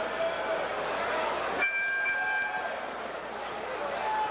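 Arena crowd noise from a boxing audience. About a second and a half in, the crowd noise drops away and the round signal sounds as two steady high tones lasting about a second, marking the start of the next round.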